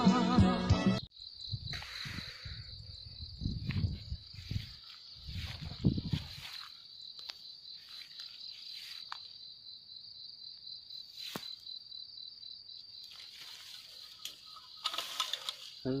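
Music stops about a second in, and an insect takes over with a steady, high, pulsing trill that carries on to the end. Low rumbling handling noise comes and goes during the first few seconds after the music.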